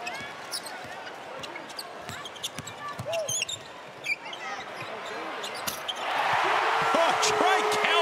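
Court sound from a basketball game: a ball dribbling on the hardwood and sneakers squeaking over a steady crowd murmur. About six seconds in, the crowd rises into loud cheering as the home side scores.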